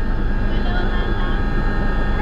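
Steady drone of a helicopter's engine and rotor, heard from inside the passenger cabin in flight.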